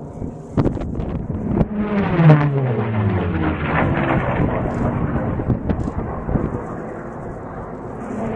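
Propeller-driven race plane flying past at speed. Its engine note comes in a second or so in, peaks, then falls steadily in pitch as it goes away.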